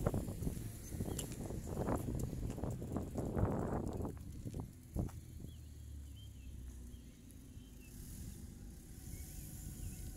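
Outdoor street ambience picked up on a handheld phone. For about the first four seconds a rustling noise of wind and handling covers the microphone. After that it is quieter, with a single sharp click and a few faint bird chirps.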